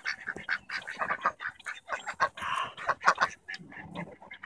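Ducks quacking repeatedly in a rapid run of short calls, with one longer, rougher call about two and a half seconds in.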